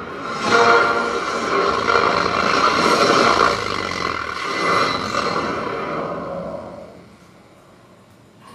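Bare woofer driven hard by a TDA7294 amplifier board with two FET output transistors, its cone moving visibly as it plays loud program audio. The sound is dense, with a steady pitched tone through it, and fades out about seven seconds in.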